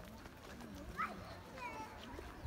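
Park ambience of faint, distant voices, with a short rising high-pitched call about a second in and another, falling call near the end. A light rumble of wind on the microphone sits underneath.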